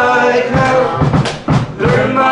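Live rock band playing: a man singing lead over electric guitar, bass, drums and keyboard, with a few sharp drum hits after the sung line and a brief dip before the band comes back in.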